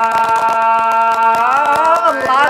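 A singer holding one long note in a Tày–Nùng folk song, then sliding upward in pitch near the end, over accompaniment with a fast, steady ticking beat.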